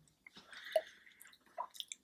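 Faint wet mouth sounds of two people tasting hot sauce off spoons: small lip smacks and clicks, with a brief low murmur about three-quarters of a second in.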